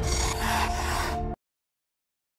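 Logo-reveal intro sting: a rushing, hissing sound effect over a deep rumble and a few held musical notes, cutting off suddenly about a second and a half in, followed by dead silence.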